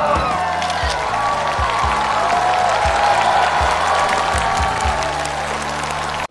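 Studio audience applauding and cheering over background music with a low bass line stepping through chords.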